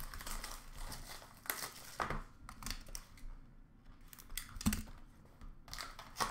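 Plastic shrink wrap crinkling and tearing as a sealed hockey card box is unwrapped by hand. The sound comes in irregular rustles and scrapes, with a quieter gap about halfway through.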